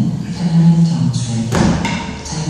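A single heavy thump about one and a half seconds in: an athlete dropping from gymnastic rings and landing feet-first on a rubber gym floor.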